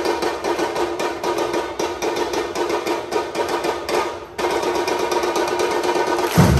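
A football supporters' samba-style drum section playing a fast, steady tapping pattern on its lighter percussion while the bass drums stay silent. The tapping breaks off briefly about four seconds in, then picks up again.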